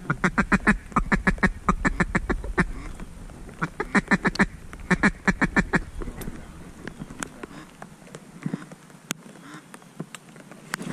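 Duck quacking in rapid runs of about seven quacks a second: one run of over two seconds, then two shorter runs, ending about six seconds in.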